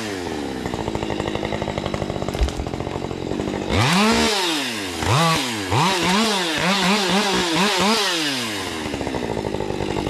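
Husqvarna 550 XP Mark II two-stroke chainsaw settling to idle, then revved once about four seconds in and given a quick run of short throttle bursts, as when limbing branches off a felled spruce. It drops back to idle near the end.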